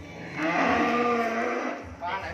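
A cow mooing once, one drawn-out call of about a second and a half.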